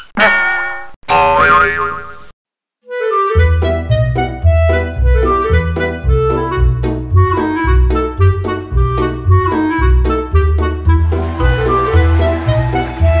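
Cartoon sound effects, including a rising boing, over the first two seconds, then a short silence. From about three seconds in, bouncy background music with a steady bass rhythm.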